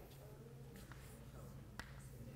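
Near silence: a faint steady low room hum, with a single sharp click of chalk striking the blackboard near the end.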